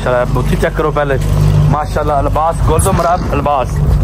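A man's voice talking throughout, over a steady low hum.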